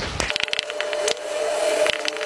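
Marker writing on a whiteboard: a quick run of short, scratchy strokes as words are written.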